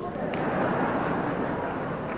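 Audience applauding and laughing, a steady even wash of sound that follows the spoken joke.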